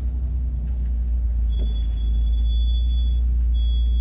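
Car engine running at idle as the car creeps forward at walking pace, a steady low rumble heard from inside the cabin. A thin high whine comes in about halfway through and again near the end.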